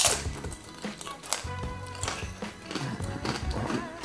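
Quiet background music under close-miked eating sounds: a sharp lip smack at the start as fingers are licked, then scattered chewing and mouth clicks.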